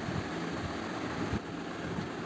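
Steady low background hum and hiss, with a faint tick about one and a half seconds in.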